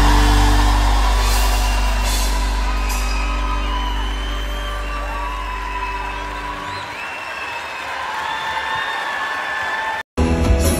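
A live band holds a final low chord that fades out about seven seconds in, as a large crowd cheers and whoops at the end of a song.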